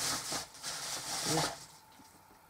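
Rummaging and shuffling of household items during a search for a particular soup, with a short muttered "yeah".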